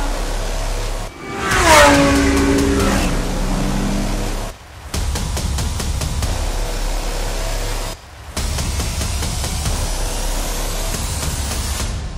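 GT3 race car engines at speed, with one car passing close about two seconds in, its engine note falling in pitch as it goes by. After that comes a steady noisy wash, broken by short dropouts twice more.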